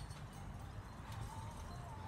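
Faint, low thuds of children bouncing on a trampoline mat.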